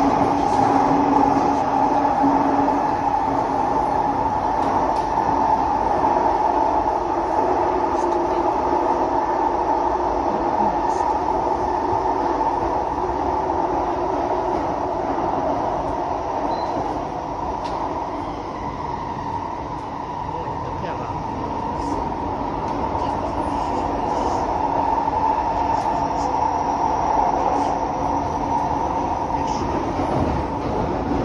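Inside an SMRT C151B metro car running between stations in a tunnel: a steady rumble of wheels on rail with a constant hum. A low steady tone fades out in the first few seconds, and the noise eases slightly about two thirds of the way through.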